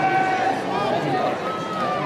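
Men's voices shouting and calling out across an open rugby field, with indistinct chatter nearby.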